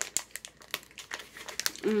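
Clear plastic zip-top snack bag crinkling as it is handled, in a quick run of short, sharp crackles.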